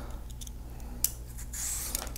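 Handheld julienne peeler's metal blades working on a cucumber: a sharp click about a second in, then a faint scraping rasp near the end as the blades are cleared of clogged skin and drawn along the cucumber.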